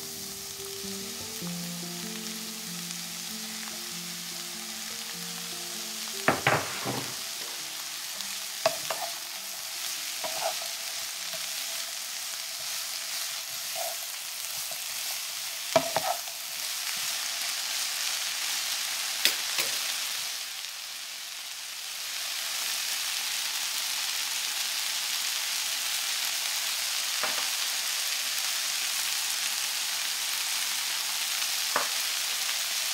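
Sliced onion, carrot and bell pepper sizzling in a non-stick frying pan, with a few sharp knocks as the vegetables are stirred with a wooden spatula. The sizzle dips briefly about twenty seconds in, then comes back steady and a little louder.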